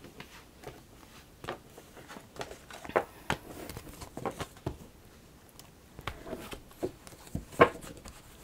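Oracle cards being picked up off a cloth-covered table and stacked into a deck by hand: scattered light clicks and taps, the sharpest one near the end.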